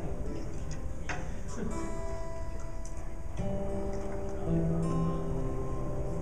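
Instrumental intro of a small worship band: acoustic guitars playing, with held notes that change every second or two.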